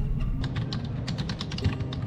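Typing on a computer keyboard: a quick run of key clicks that eases off near the end.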